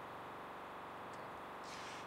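Steady low room tone in a large hall: an even hiss and faint hum with no distinct events.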